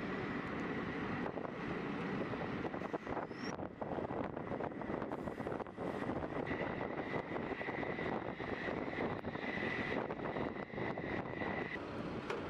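Steady jet aircraft engine noise with a thin high whine that grows stronger in the second half, and a few faint clicks.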